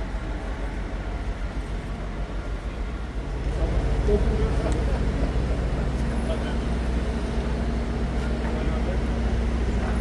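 A vehicle engine running steadily close by, heard as a low, even hum that comes in about three seconds in over the street noise.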